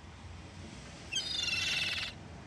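A low steady hum, then about a second in a louder, high-pitched bird-like cry made of several stacked tones, lasting just under a second before it cuts off abruptly.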